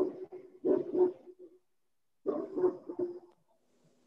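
A dog barking three times: once at the start, again about a second in, and once more around two and a half seconds in.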